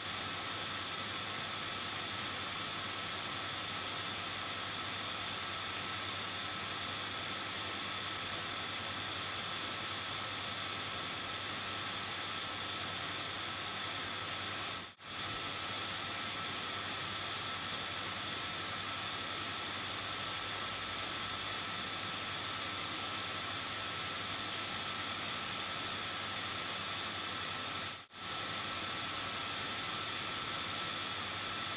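Steady electronic hiss from the recording microphone with faint constant high whine tones, cut by brief dropouts about halfway and near the end.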